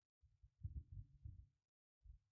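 Faint, muffled low thumps and rumble lasting about a second and a half, with near silence around them.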